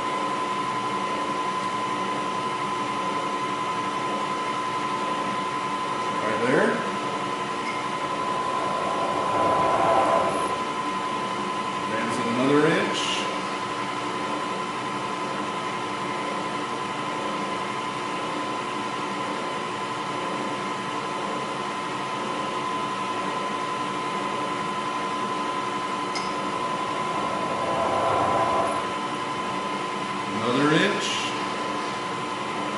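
Vertical milling machine spindle running with a steady high whine while a center drill spot-drills a row of holes in steel. A few short rising whirs, at about six and twelve seconds, and brief swells of cutting noise around ten seconds and near the end.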